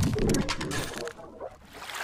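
A low, cooing bird call, strongest at the start and fading out after about a second.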